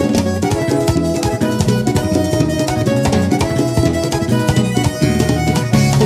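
Live salsa band playing an instrumental passage: percussion and bass guitar under held melody notes with a steady beat.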